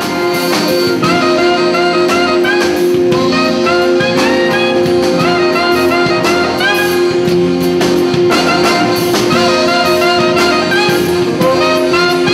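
Live jazz band playing, led by saxophones, clarinet, trombone and trumpet, with quick melodic runs over held low notes. The music begins abruptly at the start.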